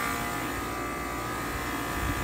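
Rooftop dehumidifier unit running: a steady mechanical hum and whine made of several fixed tones, unchanging throughout.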